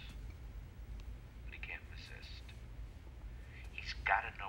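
Faint, thin speech from a caller's voice over a mobile phone, heard about a second and a half in and again near the end, over a steady low hum.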